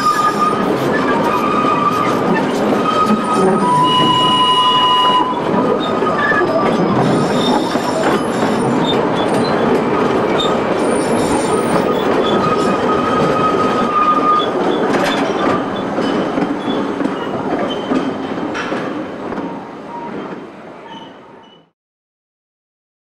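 Narrow-gauge railway carriage running along the track: a steady rumble and clatter of wheels on rail, with the wheel flanges squealing in thin, high, steady tones on the curve through the first part of the ride. The sound fades out over the last few seconds.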